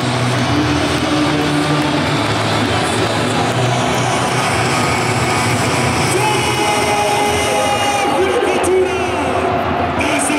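Large football stadium crowd singing a chant in unison over continuous crowd noise, with held notes about a second long.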